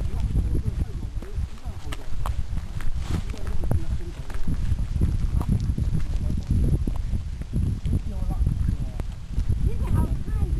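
Footsteps of a person walking along a dirt path, an irregular run of soft thuds over a low rumble.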